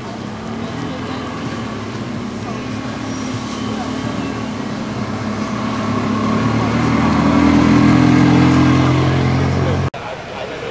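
Ferrari 360 Spider's V8 engine running at low, steady revs as the car rolls slowly past, growing louder over several seconds and then cut off suddenly near the end, with people talking around it.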